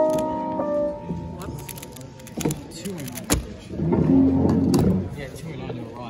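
Piano music fading out in the first second, then a few sharp plastic taps and clicks from a Pyraminx being handled over a stackmat timer, the loudest about three seconds in, with people talking in the background.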